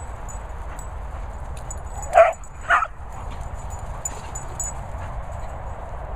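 A dog barking twice, about half a second apart, a couple of seconds in: play barks while two dogs chase each other.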